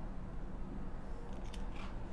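A page of a large art book being turned by hand: a short, crisp paper rustle and swish about a second in, over a low steady hum.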